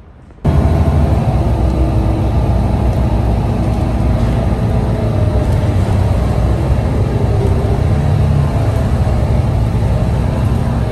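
Engine and road rumble heard from inside a moving bus, steady and loud. It cuts in suddenly about half a second in.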